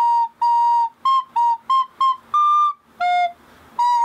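A school soprano recorder playing a simple tune of short, separately tongued notes, with one note held a little longer and a short break about three seconds in.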